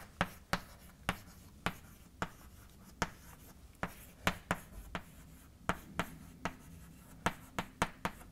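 Chalk writing on a blackboard: irregular sharp taps and short scratches as the chalk strikes and moves across the board, a few strokes a second.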